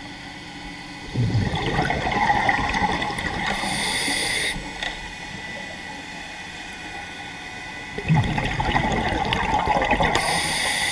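Scuba regulator underwater: two bursts of exhaled bubbles, about a second in and again about eight seconds in, each ending in a short high hiss.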